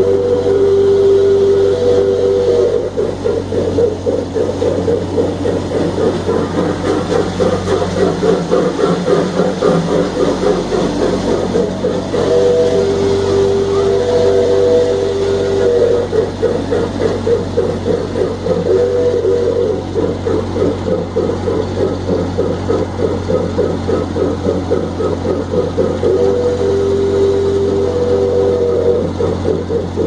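Miniature ride-on park train running along its track: a steady low engine hum with fast, continuous rattling. A two-note tone sounds over it several times: at the start, for a few seconds from about twelve seconds in, briefly near twenty seconds, and again near the end.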